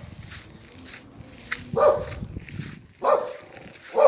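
A dog barking twice, two short barks a little over a second apart.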